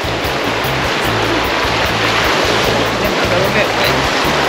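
River water rushing through a small rapid, a steady rush of white water, with background music playing over it.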